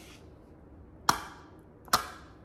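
Two sharp plastic clicks about a second apart as a BeanBoozled game spinner is handled and flicked.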